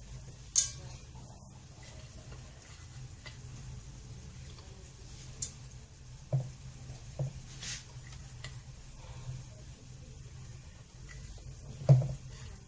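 Scattered light clinks and soft knocks of small aluminium cups being handled on a silicone mat while kataifi pastry strands are pressed into them, over a low steady hum. The loudest knock comes just before the end.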